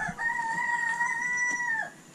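A rooster crowing once: one long, level call held for nearly two seconds that cuts off just before the end.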